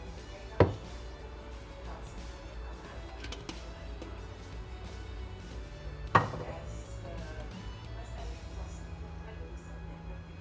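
Faint background music with two sharp knocks, one about half a second in and one about six seconds in, from the glass olive-oil bottle and the pan being handled.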